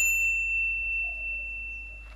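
A single high, pure, bell-like ringing tone that starts loud and fades slowly over about two seconds.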